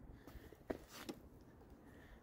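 Near silence: quiet background with two faint short clicks about a second in.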